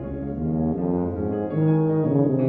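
Tuba and piano playing together in a classical piece: the tuba moves through several sustained notes over the piano accompaniment, growing louder.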